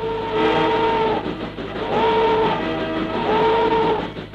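Train whistle sounding three times: a long blast at the start, then two shorter ones about two and three seconds in, each sliding up into its pitch.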